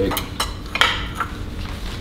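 Metal kitchen tongs clinking against cookware and the stove grate as a tortilla is turned over a gas burner: about four sharp clinks in the first second and a half.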